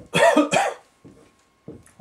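A man coughing twice in quick succession, a little after the start.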